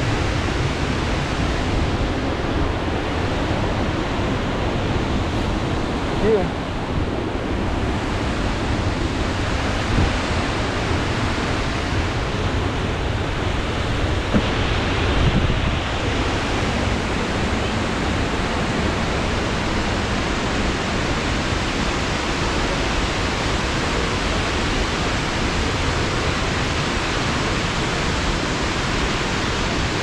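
Burney Falls, a tall waterfall, pouring into its plunge pool close by: a steady, even rush of falling water, with a few brief knocks.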